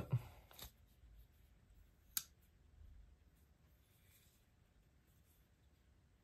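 Near silence with one sharp click about two seconds in, as the Spyderco Shaman's blade is opened and its Compression Lock engages, and a fainter click and light handling rustle around it.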